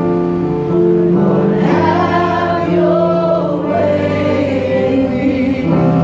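A congregation singing a slow gospel worship song together over sustained accompaniment, with long held notes.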